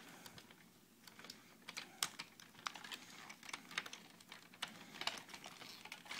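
Faint, irregular clicks and taps of the hard plastic parts of a large Transformers figure being handled and shifted during its transformation. One click about two seconds in is a little louder than the rest.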